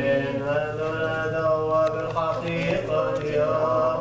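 Coptic Orthodox liturgical chant, sung unaccompanied, with long held notes that waver in pitch and brief breaths between phrases.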